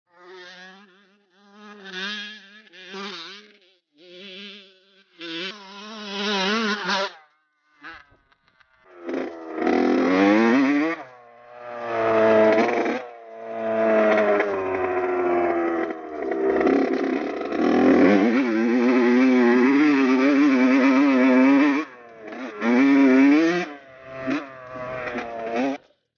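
Dirt bike engine revving hard in a run of short clips, its buzzing pitch climbing and dropping as the throttle opens and closes and the rider shifts, with brief gaps between clips.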